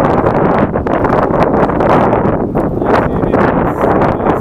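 Wind buffeting a body camera's microphone: a loud, gusty rumble.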